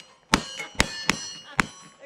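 Four gunshots in quick succession, roughly half a second apart, with a high metallic ringing between them, typical of hits on steel targets.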